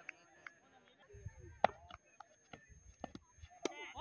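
Quiet outdoor background with a few sparse, short clicks and knocks, the sharpest about a second and a half in, and a brief low rumble just after one second.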